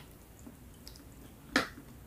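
A sharp, wet mouth smack about three quarters of the way in while chewing a soft, sticky glutinous rice cake, over faint quiet chewing.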